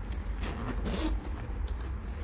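The zipper of a soft-sided fabric Giordano suitcase being pulled open along its edge, a rasping zip in short pulls.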